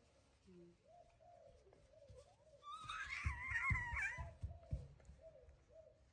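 Baby macaque giving a high, wavering squealing cry lasting about a second and a half near the middle, over softer repeated wavering calls, with a few dull thumps.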